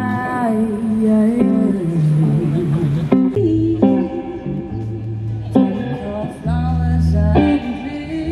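Live song: a woman singing over electric guitar and bass.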